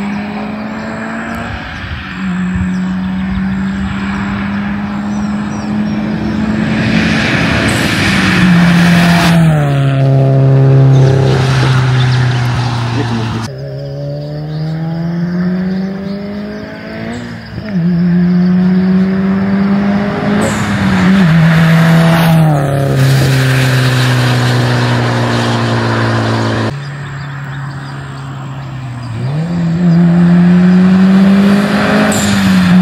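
Loud performance car making repeated high-speed flybys: the engine and exhaust note holds a steady pitch on the approach, then drops sharply as the car passes, several times over.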